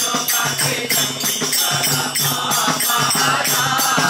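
A group of men chanting a devotional song together, accompanied by small brass hand cymbals clashing on a steady beat and hand-held frame drums.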